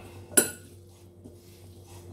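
Stainless steel potato masher mashing boiled chickpeas in a glass bowl, striking the glass once with a sharp clink and a brief ring about half a second in, with soft squashing sounds around it.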